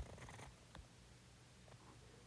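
Near silence: faint low room hum, with a brief soft hiss in the first half-second.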